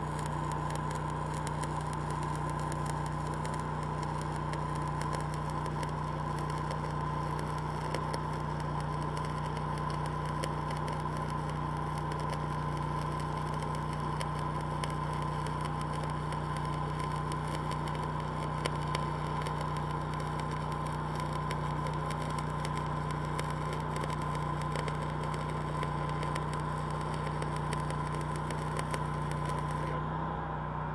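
Stick-welding arc of a 7018 electrode crackling steadily as a fillet bead is run, ending as the arc is broken at the very end. Under it, the steady drone of the engine-driven Lincoln Ranger welder powering the arc.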